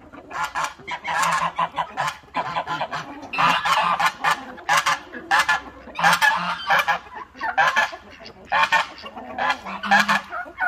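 Domestic geese honking over and over, about two short calls a second, in a farmyard flock of poultry.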